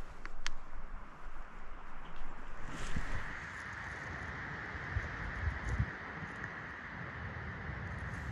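Wind buffeting the microphone outdoors: low rumbling gusts and a steady rushing hiss, with two faint clicks within the first half second.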